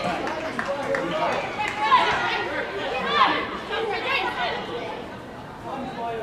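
Several voices calling and shouting over one another across a football pitch, from players and people around it while play goes on. The voices fade down after about four and a half seconds.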